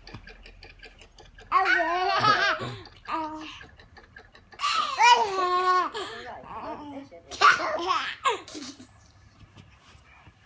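A baby laughing in three loud bouts of belly laughter, set off by playing with a person's bare feet.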